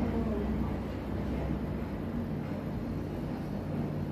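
Steady low motor hum of a pet blow dryer running.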